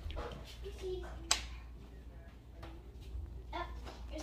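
A dog whining in short, soft calls, with one sharp click a little over a second in.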